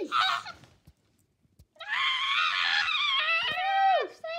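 A child screaming in a high, silly play voice: a short cry at the start, a pause of about a second, then one long, steady scream of about two seconds.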